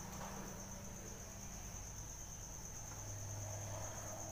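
A steady high-pitched trill, pulsing slightly, over a low hum, with the faint rubbing of a duster wiping a whiteboard.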